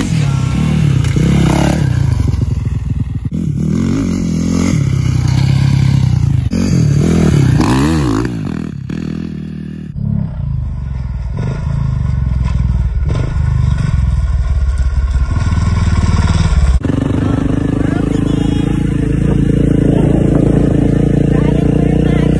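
Dirt bike engine revving up and down repeatedly as it is ridden around a dirt track. The sound changes abruptly twice, and the last few seconds hold a steadier engine note with wind noise.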